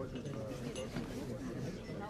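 Faint, indistinct chatter of several voices talking at once, with no one voice standing out.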